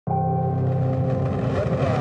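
A deep rumble under a sustained droning chord that starts suddenly and holds steady, a cinematic soundtrack bed laid under rocket-launch footage.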